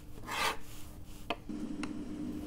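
Pen scratching on paper as handwritten notes are taken: a short scratching stroke about half a second in, then two light ticks.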